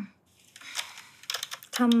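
A string of soft irregular clicks and crackle, then a woman's short closed-mouth "mm" hum near the end, as if tasting something.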